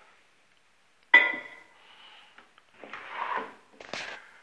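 A cup of water set down on a microwave oven's glass turntable tray about a second in: a sudden knock with a short ringing tone that fades quickly. Soft handling noise follows, then a short sharp click near the end.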